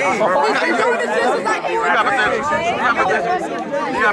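Several people talking over one another in overlapping chatter, without any one clear voice.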